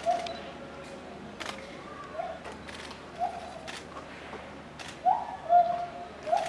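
A bird calling with short, clear notes, a few seconds apart and loudest as a pair near the end, among scattered sharp clicks of camera shutters.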